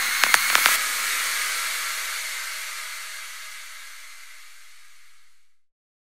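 End of a psytrance track: the last few fast kick-drum beats in the first second, then a hissing noise tail that fades away over about five seconds and cuts to silence near the end.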